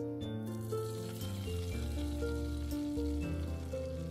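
Background instrumental music with a steady melody, over a faint sizzle as the beaten egg and shredded cabbage mixture is poured into hot melted butter in a wok.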